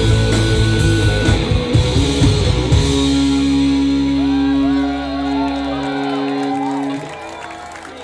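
Rock band playing live on electric guitar, bass and drums, then a final held chord from about three seconds in that rings out, the end of a song. The low end drops away near six seconds and the sound falls off about a second before the end, leaving wavering guitar tones.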